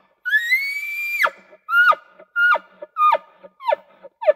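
Bull elk bugling: a long, high whistle that climbs and holds, then breaks sharply downward about a second in. It is followed by a string of short, steeply falling chuckles, roughly two a second.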